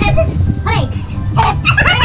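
Several men's voices shouting and whooping in short calls that bend up and down in pitch, over a steady low hum.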